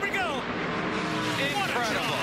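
ARCA Menards Series stock cars' V8 engines running at racing speed through a corner and past the wall, with a commentator's wordless exclamation over them at the start and end.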